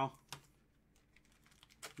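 A few light clicks from a plastic magnetic one-touch card holder being opened by gloved hands: one about a third of a second in and a couple more near the end.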